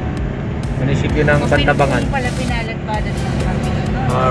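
Inside a moving car: steady low engine and road rumble, with a person's voice over it from about one to three seconds in.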